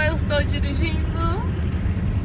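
Steady low road and engine rumble inside a moving car's cabin at highway speed, with a few brief high-pitched vocal sounds in the first second and a half.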